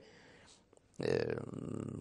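A man draws a faint breath, then about a second in makes a drawn-out, low voiced hesitation sound held on one vowel.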